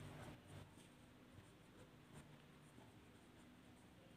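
A pen writing on paper, faint, with short strokes.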